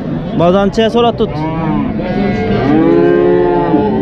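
Cattle mooing: a few short calls in the first second or so, then one long, arching moo in the second half.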